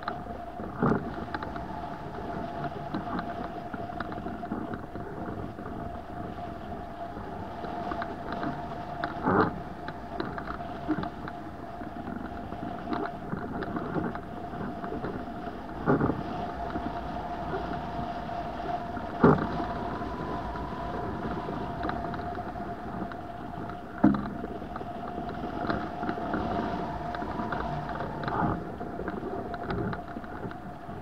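Wind rushing past a hang glider in flight, with a steady whistling tone held throughout. Half a dozen sharp knocks break through at irregular intervals, the loudest about two-thirds of the way in, as the glider is jolted in choppy air.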